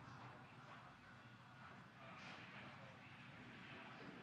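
Near silence: a faint steady hiss of background noise.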